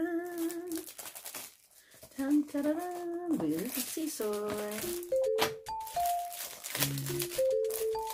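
A woman's voice singing a drawn-out 'dun' fanfare with wavering pitch, followed from about five seconds in by a simple melody of steady notes. Cellophane crinkles as the perfume box's plastic wrap is handled.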